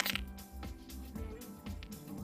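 Soft background music with sustained, steady notes.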